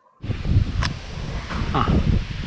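Wind buffeting the camera microphone during a motorbike ride, an uneven low rumble that starts suddenly. A sharp click comes just under a second in, and a short higher-pitched sound near the end.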